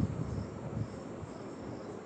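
Quiet background with a faint, high chirping repeating every half second or so, insect-like, over a low rumble.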